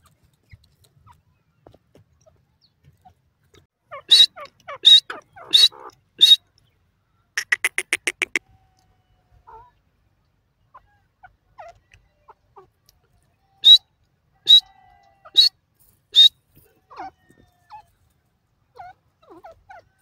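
Grey francolin calling: four loud, sharp calls about three-quarters of a second apart, then a quick run of about ten short notes, and after a pause another four sharp calls.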